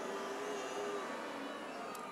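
Rally crowd's faint, steady murmur of many voices in a large hall, with no nearby speaker.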